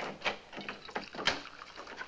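Several light, irregular knocks and clicks of objects being picked up and handled.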